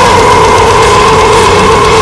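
Brutal death metal music: drums under one long, steady high note held through the whole stretch.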